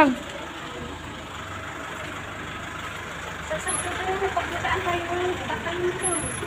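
Steady outdoor background noise, possibly traffic, with faint talking in the second half.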